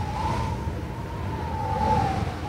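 Song intro ambience: a distant siren's long wavering tone, dipping slightly near the end, over a steady low rumble like traffic.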